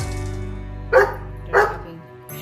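Two short dog barks, about two-thirds of a second apart, over background music.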